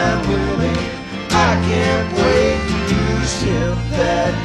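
Recorded country-rock band music led by acoustic guitar and other acoustic instruments, with singing.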